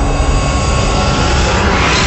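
Cinematic logo-intro sound effect: a loud, rushing rumble like a passing jet, swelling brighter toward the end.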